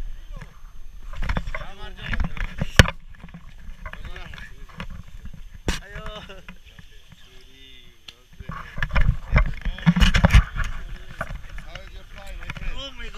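Voices talking close by, with sharp knocks and rustling from handling the harness and camera. There is a loud rumbling burst on the microphone about nine seconds in.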